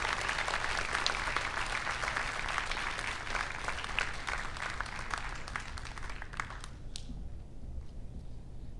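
Large audience applauding, the clapping thinning and dying out about six and a half seconds in.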